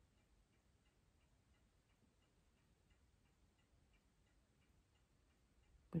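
Faint, even ticking of a clock, several ticks a second, in an otherwise near-silent room.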